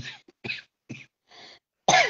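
A woman coughing: a series of short coughs about half a second apart, with a louder voiced sound near the end.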